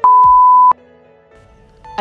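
A single loud electronic beep: one steady high tone lasting under a second that cuts off sharply. It is followed by soft background music.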